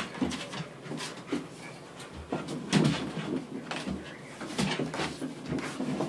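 Dogs wrestling and scuffling, with irregular knocks and thuds; the loudest knock comes about three seconds in.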